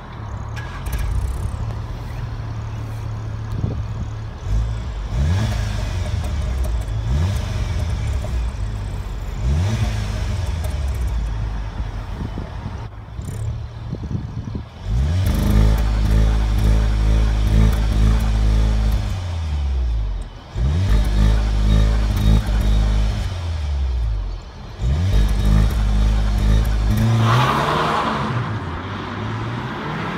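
SEAT Leon Cupra ST 280 on its stock exhaust, the 2.0-litre turbocharged four-cylinder idling, then blipped in three short revs. It is then held at high revs for a few seconds three times, dropping back between. Near the end the engine rises again and the car pulls away.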